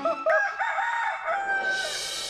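A rooster crowing: a few short notes, then one long held note that stops near the end. A bright shimmering musical swish comes in as it ends.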